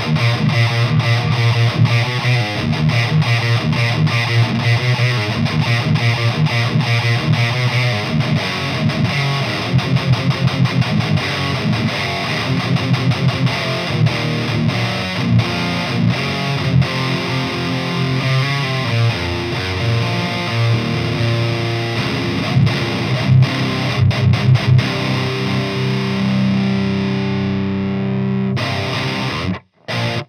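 Seven-string electric guitar played through a high-gain Fortin tube amp head into a 4x12 cabinet: heavy distorted metal riffing with fast palm-muted chugs and some held chords, breaking off briefly just before the end.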